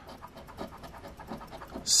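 A coin scraping the latex coating off a scratch-off lottery ticket: quick, faint scratching strokes.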